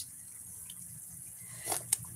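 Someone tasting chicken adobo sauce from a spoon, with a brief slurp near the end, over a low steady hum.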